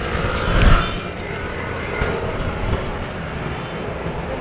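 Roadside traffic noise: a low, steady vehicle rumble that swells briefly about half a second in, then settles.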